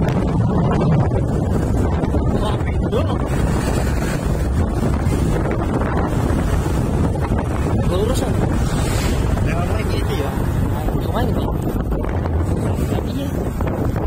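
Steady wind rumble buffeting the microphone of a vehicle driving along a rough road, with engine and tyre noise underneath.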